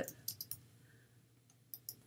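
A few faint computer keyboard keystrokes while finishing a typed line, two quick clicks near the end.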